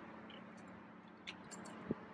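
Faint sounds of a person drinking from a plastic water bottle: a few light clicks, then a soft gulp near the end, over a low steady hum.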